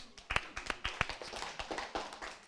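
A woman clapping her hands lightly, a quick, irregular run of claps, several a second.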